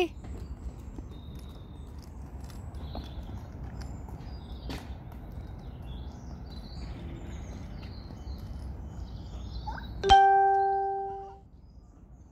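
Low steady outdoor rumble with a few faint clicks, then about ten seconds in a single loud bell-like chime that rings for about a second and fades away.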